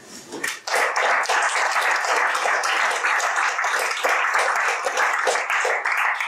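Audience applauding, with many hands clapping at once, starting about half a second in.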